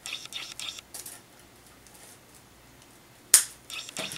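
Scissors snipping through wire-edged ribbon in a few short crisp cuts and rustles, then a single sharp click near the end.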